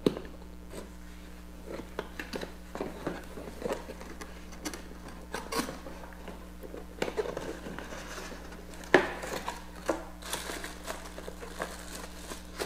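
A cardboard camcorder box being opened and its packing handled: scattered rustles, scrapes and light taps, with one sharper knock about nine seconds in.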